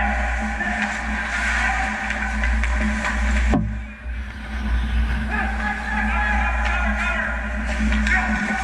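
Background music laid over the footage, with a brief sharp dropout about halfway through.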